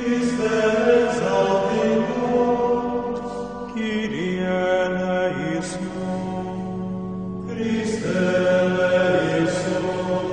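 Closing music: a slow sung chant, with long held notes that glide from one pitch to the next in phrases of a few seconds.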